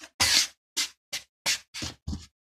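Quick scratching strokes across the coated panel of a £1 Payday scratchcard, about five short rasping scrapes in two seconds, the first the longest.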